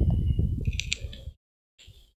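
Low, irregular rustling and handling noise for a little over a second that cuts off abruptly into dead silence, with a brief faint scrape near the end.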